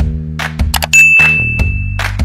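A bright notification-bell 'ding' sound effect: one clear tone struck about a second in and left ringing. It sounds over intro music with a steady beat and bass.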